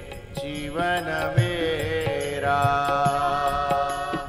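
A Hindi devotional bhajan sung by a single voice with melodic accompaniment holding steady notes and regular drum beats.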